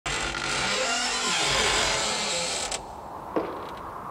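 A long, drawn-out creak over a loud hiss, its pitch sliding slowly downward, cutting off suddenly a little under three seconds in; a single sharp knock follows.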